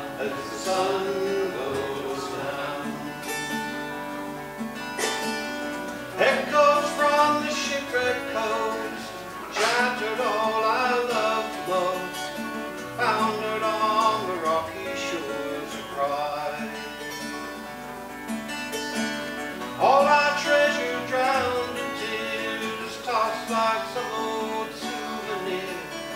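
Acoustic guitars playing strummed chords in an instrumental passage of a folk song.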